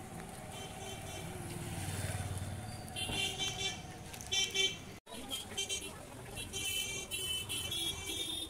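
Street traffic: a motor vehicle passing with a low rumble, then repeated short honks from vehicle horns in two bursts, the second near the end.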